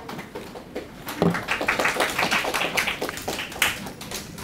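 A knock about a second in, then a short burst of applause from a classroom audience.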